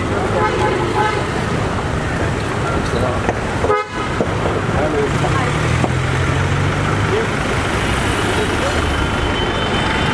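Busy street traffic with car horns tooting and people talking around, with a brief drop in the sound just under four seconds in.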